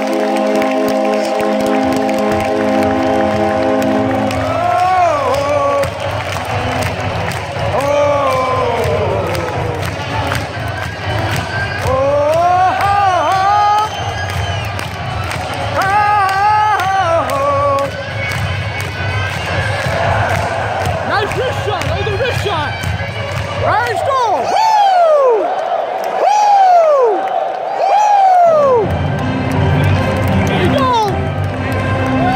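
Arena crowd noise at an ice hockey game with music over the public-address system: held steady chords for the first few seconds, then pitched melodic swoops over the crowd, with a run of rising-and-falling slides near the end.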